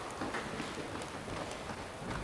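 Running footsteps on a hard corridor floor: a quick, irregular string of light footfalls.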